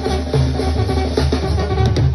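Live banda music through a stage sound system: a brass band with a sousaphone playing a pulsing bass line under drums and horns.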